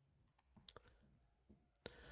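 Near silence broken by a handful of faint short clicks, spaced irregularly, the strongest one just before the end.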